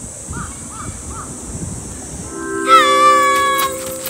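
Outdoor public-address loudspeaker chime melody, the signal that comes before a public announcement. It starts a little over halfway in with steady low tones, then a loud held note that scoops down and holds for about a second. The low tones ring on past the end. A few faint short chirps come early on.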